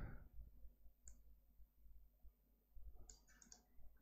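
Near silence with a few faint computer mouse clicks: one about a second in and a quick cluster near three seconds.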